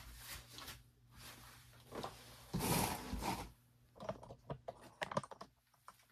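Handling noise: the white plastic sleeve around a new bass guitar rustling as it is gripped and moved, followed by a quick run of small clicks and knocks about four seconds in.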